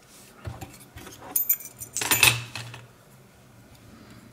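Small metal objects clinking and jingling as they are handled, a string of light clicks with a brighter metallic jingle around two seconds in.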